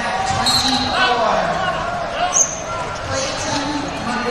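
Babble of many overlapping voices from spectators and coaches, echoing around a large hall. A brief, sharp high-pitched squeak comes about two and a half seconds in.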